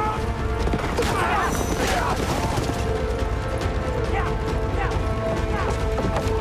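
Dramatic TV soundtrack mix: a tense music score of sustained held notes under a dense layer of rapid knocks and clicks.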